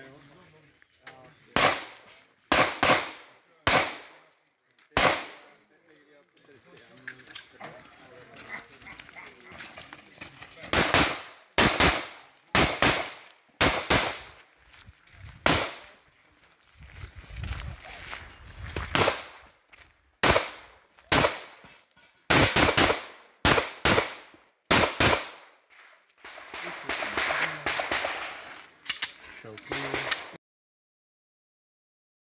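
CZ pistol shot in quick pairs during an IPSC stage: bunches of sharp reports with pauses between them as the shooter moves to new positions, the last shots about five seconds before the end.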